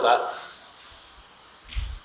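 A man's speech breaking off into a short pause with faint hiss, then a brief low bump near the end before his voice resumes.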